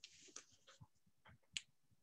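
Near silence with a few faint, short clicks, the sharpest about one and a half seconds in.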